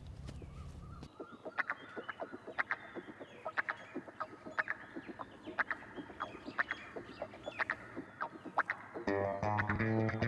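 Chickens clucking in short calls, roughly one or two a second. About nine seconds in, guitar music with a bass line comes in.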